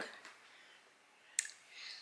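A single short, sharp click about one and a half seconds in, in a quiet pause between speech.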